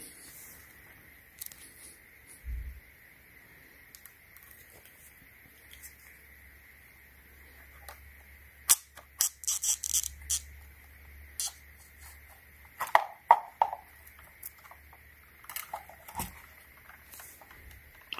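Scattered clicks, taps and short scrapes of hard plastic being handled as a battery pack of 18650 cells is worked out of a handheld vacuum's plastic housing, with one low thump a few seconds in. The clicks cluster about halfway through.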